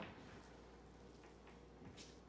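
Near silence: room tone with a faint low hum, and a faint tap at the start and another near the end as a bench scraper cuts through dough onto a stainless steel counter.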